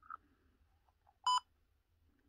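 A trail camera's keypad gives one short, high electronic beep about a second in as a button is pressed.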